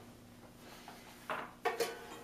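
Handling noise from a guitar cable at the guitar's output jack: a short knock followed by two sharp clicks in quick succession near the end. A faint steady hum follows the clicks.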